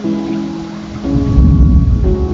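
Thunder rumbling low, building about a second in to the loudest sound, over steady rain and background music with held chords.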